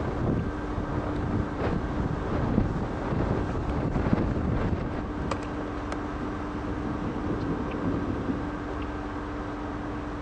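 Wind rushing and buffeting the microphone, gustier in the first half, over a steady low hum.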